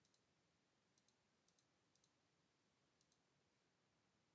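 Faint computer mouse clicks, five quick pairs over near silence, spread across about three seconds.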